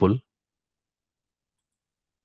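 A man says the single word "pull", then dead silence.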